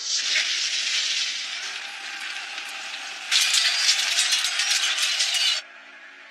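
A loud rushing hiss that eases off after a couple of seconds. It then swells into a louder, dense crackling about halfway through and cuts off abruptly shortly before the end.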